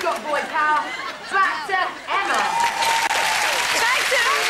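A woman's voice calling out in short phrases, then from about two seconds in a studio audience cheering and applauding, with many voices at once.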